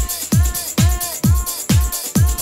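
Instrumental stretch of a 1990s Eurodance club mix: a kick drum on every beat, a little over two a second, each followed by a short synth chord, over steady hi-hats, with no vocals.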